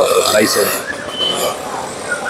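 A man's voice, a short vocal sound in the first half-second, then quieter street background with a brief high whistle-like tone a little after a second in.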